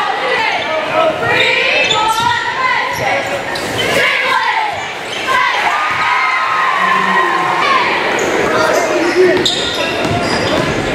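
Basketball being dribbled and bouncing on a hardwood gym floor during live play, with shouting voices and high, gliding squeaks throughout, all echoing in a large gymnasium.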